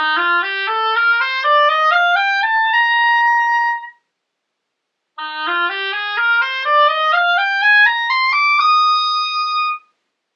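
Oboe playing a rising scale, note by note, over about two octaves and holding the top note; the sound stops abruptly in the middle, and a second rising scale follows, ending on a higher held note that also cuts off just before the end.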